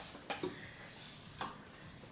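A few faint clicks with light rustling as yarn and a threading hook are handled at a rigid-heddle loom while it is being warped.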